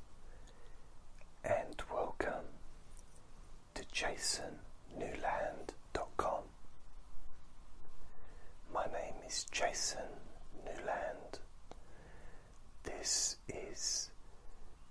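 A person whispering close to the microphone in short phrases with pauses between them, the s-sounds hissing sharply.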